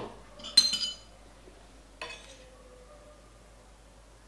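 A single ding of a metal desk call bell about half a second in, ringing briefly. About two seconds in, a lighter metal clink of a spoon against the plate as rice is scooped.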